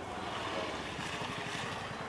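Steady background noise of a room with a crowd standing in it: an even hiss without any clear single sound.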